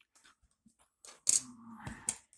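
Plastic model-kit parts being handled and set down on a workbench: faint light clicks and taps, then a louder scrape and rustle about halfway through, ending in a soft knock.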